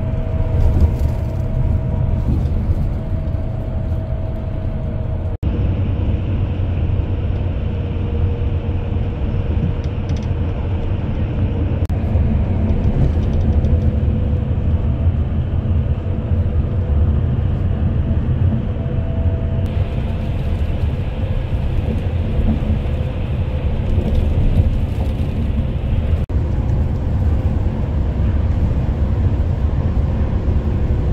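Steady low road and engine rumble inside a bus cabin cruising at highway speed, with a faint steady whine through it. The sound drops out for an instant twice.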